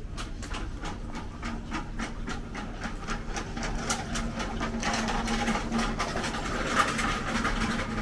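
A wheeled trolley rolling across a shop floor, its wheels clicking rapidly and evenly, about five clicks a second, over a steady low hum. It grows louder about halfway through.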